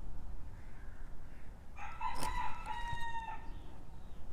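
A rooster crowing once, starting about two seconds in and lasting about a second and a half, with a short click near its start.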